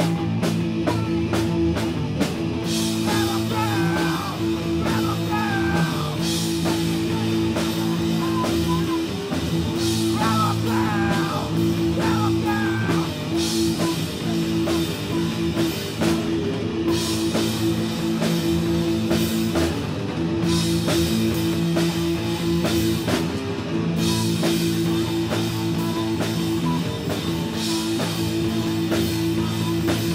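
Live rock band playing a song on electric guitar, bass and drum kit, with sustained chords over a steady cymbal wash.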